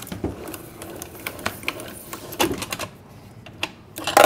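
Hand-cranked pasta machine being turned with a sheet of pasta dough passing through its steel rollers, giving a series of irregular mechanical clicks and ticks.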